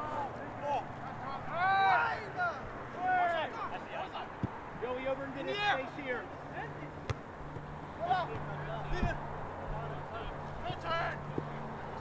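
Players' voices shouting short calls across the soccer field during live play, one call every second or two, with a few sharp knocks among them. A low steady hum sets in about five seconds in.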